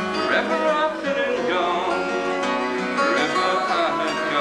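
Acoustic guitar played live, accompanying a folk-blues song between sung lines.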